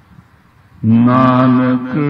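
After a short lull, a male voice begins chanting a line of Gurbani (Sikh scripture), holding long, steady notes.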